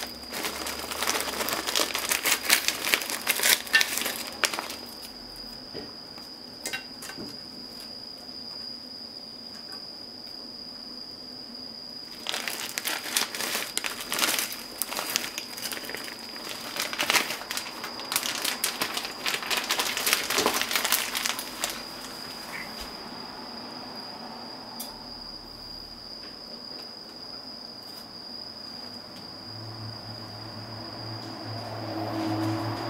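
Clear plastic bag crinkling as small shrimp are shaken out of it onto a pizza's toppings. It comes in two spells: one in the first few seconds and a longer one from about twelve to twenty-two seconds in.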